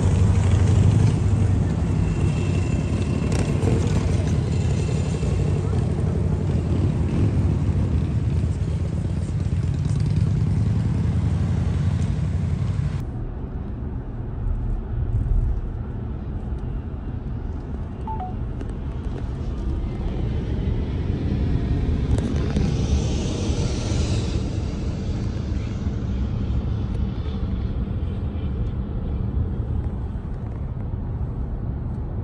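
Road traffic: cars moving and idling on a street, with steady low rumbling. About a third of the way in this gives way to the duller, steady road and engine noise heard inside a moving car on a highway.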